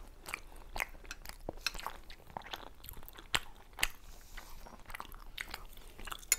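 Close-miked ASMR chewing of pan-fried potato-and-mushroom dumplings: a steady run of short mouth clicks and smacks, with two louder smacks a little past the middle.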